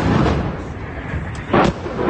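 Blasts from a missile strike on a building. The rumble of one explosion fills the opening, and another sharp, loud blast comes about a second and a half in.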